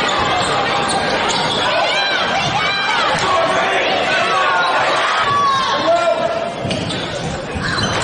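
Basketball game sound in a reverberant gym: a ball bouncing on the hardwood court, short high squeaks of sneakers, and the voices of players and spectators.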